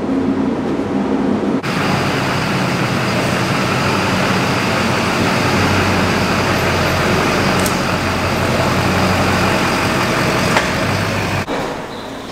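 Duramax 6.6-litre V8 turbodiesel in a GMC pickup running steadily at idle close by, starting abruptly about one and a half seconds in after a steady hum and stopping abruptly near the end.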